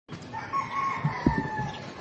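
One long animal call, like a rooster's crow, that rises briefly and then sags slowly in pitch, with a short low thump about a second and a quarter in.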